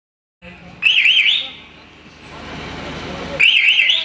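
Electronic siren-like sound effect from a DJ sound system: two short, loud bursts of a fast warbling high tone, about a second in and again near the end, with a quieter rising swell of noise between them.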